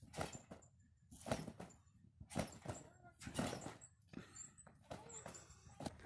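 Backyard trampoline being jumped on: a faint thud of the mat with each bounce, about one a second.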